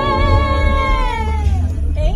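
Voices singing together without accompaniment, holding a long high closing note with vibrato that slides down and fades out about a second and a half in.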